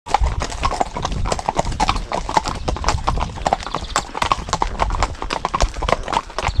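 Hooves of several horses walking on a tarmac lane: overlapping clip-clops, several hoofbeats a second in an uneven patter.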